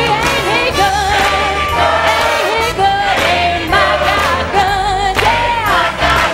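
Live gospel music: a woman sings lead into a handheld microphone, holding wavering notes with vibrato, over a choir and a band with bass and drums.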